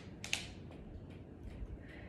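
Plastic water bottles crackling in the hands as the arms swing in trunk rotations: a sharp crackle near the start, then fainter scattered clicks.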